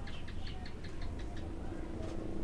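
A rapid run of faint, evenly spaced clicks or chirps, about seven a second, dying away after a little over a second.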